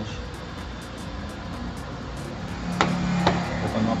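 Sony projector's cooling fan running steadily while the lamp cools down after switch-off, the normal shutdown cycle of the repaired unit. Near the end come two sharp clicks about half a second apart, over a short low hum.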